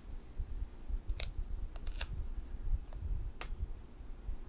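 Hands pressing and rubbing clear plastic transfer tape over a vinyl decal on an aluminium laptop lid: several sharp crackles and clicks from the tape, over a low rumble of handling.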